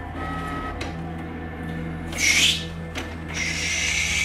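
Canon inkjet multifunction printer running as it feeds out a printed page, then paper rustling about two seconds in and again near the end as the printed sheet is pulled from the output tray. Background music plays throughout.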